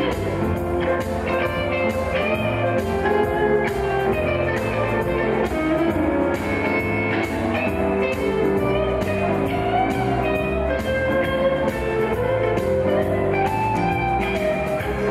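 Small live band playing an instrumental passage: electric guitar and saxophone over a steady drum beat, with no vocal.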